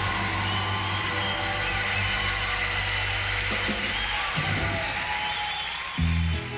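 Instrumental opening theme music of a TV programme, with steady bass notes and sustained higher tones. The bass drops out about two-thirds of the way in, and the music thins toward the end.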